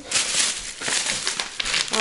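Plastic grocery bags rustling as items are handled and pulled out of them, an irregular crackle of plastic.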